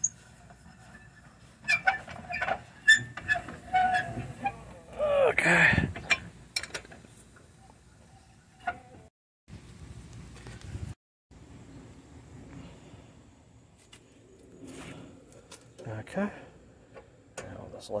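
Steel lug wrench clinking and knocking on the lug nuts of an alloy car wheel as the nuts are tightened: a run of sharp metal clicks in the first few seconds, then a louder sound about five and a half seconds in, and scattered softer knocks after.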